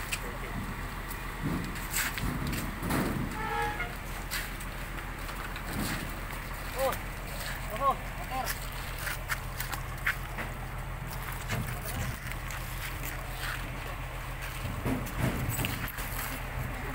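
People's voices talking in the background, with scattered knocks and clatter over a steady low hum.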